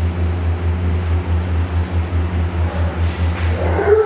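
A steady low, engine-like rumble with a slight regular pulse; near the end, a brief voice-like sound.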